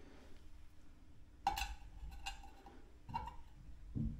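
Metal tongs clinking lightly against a small enamel pot on a gas burner where a silver coin is being heated: three faint clinks, the first and loudest about a second and a half in with a brief ring after it.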